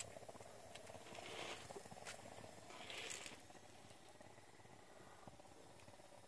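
Near silence, with two faint soft rustles and a few faint clicks.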